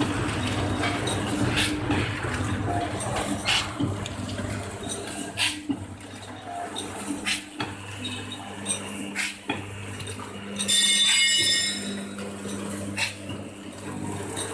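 A 240A automatic sugar bag packing machine running: a steady low mechanical hum with sharp clicks about every two seconds as it cycles through its packing strokes. About eleven seconds in, a loud high-pitched buzzing tone lasts about a second and a half.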